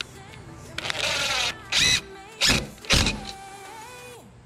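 Cordless drill driving screws through a steel drawer glide rail into a two-by-four. The motor runs once for under a second, about a second in, then gives three short bursts as the screw is driven home.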